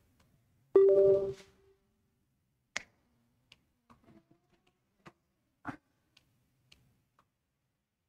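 A short, loud pitched sound about a second in, then sparse faint clicks as a handheld presentation remote is pressed to advance slides.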